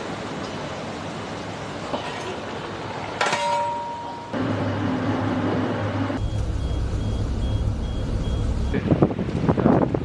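Shipboard sound during an underway replenishment at sea: a steady mix of rushing noise and low machinery hum from the ships and the transfer rig, changing abruptly at several cuts. A loud uneven crackle comes near the end.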